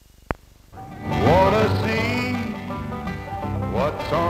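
Faint hiss and a sharp pop from an old film soundtrack, then country-style music starts about a second in with sliding notes and carries on at full level.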